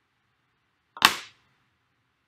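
A single sharp knock or click about a second in, with a smaller click just before it, dying away within a third of a second.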